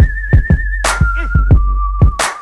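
Hip hop instrumental beat led by a whistled melody on wavering held notes that step down in pitch twice. Under it run a deep steady bass line, booming kick drums that fall in pitch, and sharp claps.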